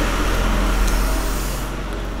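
Rustling handling noise from packaging as a boxed diecast model car is pulled out of bubble wrap and held up. It is an even, noisy rustle that slowly fades toward the end, over a steady low room hum.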